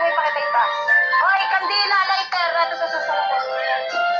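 A song with a sung vocal line playing continuously.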